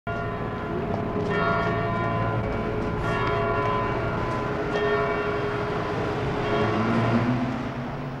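Cathedral bells tolling, one slow stroke about every two seconds, each ringing on into the next.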